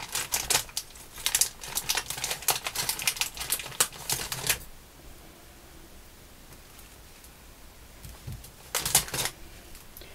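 Thin clear plastic bag crinkling and rustling in the hands as a rapid crackle for about four and a half seconds, then quiet, then a short burst of crinkling about nine seconds in.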